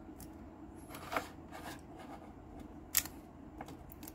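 Faint handling of a hard plastic graded-card slab in a soft plastic sleeve: light rustling and a few small clicks. The sharpest click comes about three seconds in, as the case is set down.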